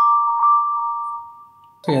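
A phone ringtone preview: a chime of two held notes, struck again softly about half a second in, dying away over about a second and a half.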